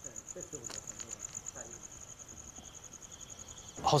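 Insects trilling in the night: a steady, high-pitched chirping made of rapid even pulses.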